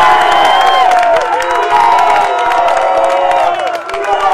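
A crowd of spectators cheering and shouting loudly, many voices at once, as a goal is scored in a football match.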